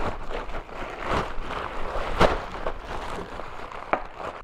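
Plastic mailer bag being torn open and packing paper being unwrapped and crumpled: irregular crinkling and rustling, with a sharp rip at the start and another louder crackle a little past halfway.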